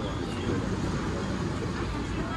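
Busy street ambience: a steady rumble of road traffic with indistinct crowd chatter.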